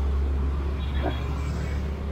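Light road traffic beside a street, heard as a steady low rumble, with a faint brief high tone about a second in.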